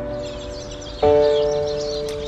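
Channel intro jingle of ringing bell-like notes with a high shimmer over the first second; a new chord is struck about a second in and fades.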